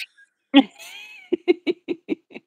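A woman laughing hard: a high, squealing drawn-out sound, then a quick run of short 'ha' pulses, about six a second.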